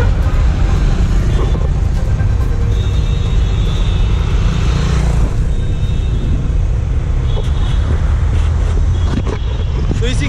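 Road traffic passing on a city street, under a heavy, uneven low rumble.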